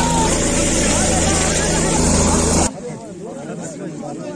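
A helicopter running close by, a loud steady engine and rotor noise with people shouting over it. It cuts off abruptly about two-thirds of the way in, leaving the chatter of a crowd.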